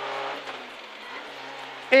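Renault Clio N3 rally car's two-litre four-cylinder engine running at speed, heard inside the cabin as a steady, fairly quiet hum under a haze of road noise.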